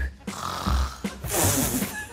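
A woman attempting a snort, raspberry and whistle sequence: a thin, breathy whistle early on, then a loud, noisy snort about a second and a half in.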